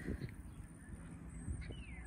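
Quiet outdoor ambience with a low rumble, a couple of faint clicks and a faint, short falling bird chirp near the end.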